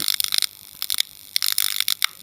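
Flickering neon-sign sound effect: rapid, irregular electrical clicks and short crackles.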